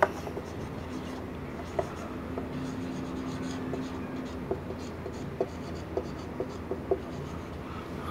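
Marker pen writing on a whiteboard: the tip rubbing across the board, with a few short sharp taps of the tip on the surface, clustered more closely in the second half.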